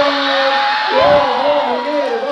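Several men's voices calling out together in long, sliding held notes, over audience whoops and crowd noise.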